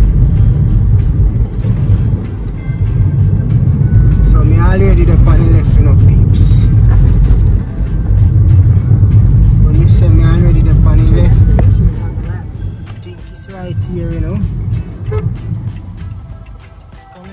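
Music with a sung voice playing inside a moving car, over a heavy low rumble of the car on the road. The rumble falls away about twelve seconds in as the car slows, leaving the music quieter.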